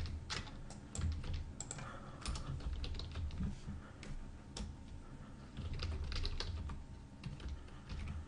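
Typing on a computer keyboard: irregular key clicks in short runs with brief pauses, as text is entered into an editable field.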